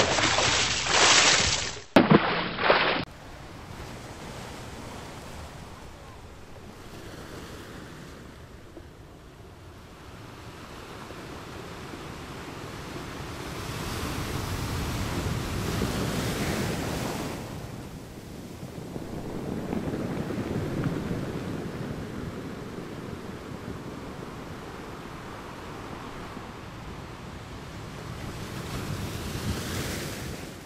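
Ocean surf sound effect: waves washing in slow surges that swell and fade, loudest about halfway through. It opens with a louder rushing burst in the first two or three seconds.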